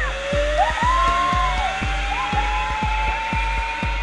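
Zipline trolley pulleys running along the steel cable, a thin whine rising steadily in pitch as the rider gathers speed. It plays over background music with a steady beat.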